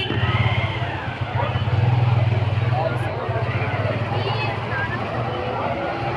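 A steady low engine hum runs throughout, with scattered voices of people talking around it.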